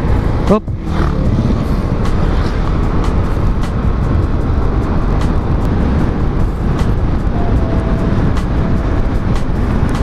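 Yamaha Aerox 155 VVA scooter under way: steady, loud wind rush on the camera microphone mixed with the engine running at cruising speed.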